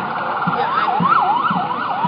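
Emergency vehicle siren in fast yelp mode: a rapid up-and-down wail, about four sweeps a second. It starts about half a second in, over steady background noise.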